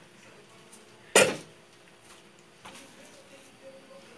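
A wooden spoon knocks once, sharply and loudly, against a large metal soup pot about a second in, during stirring of a full pot of thick soup.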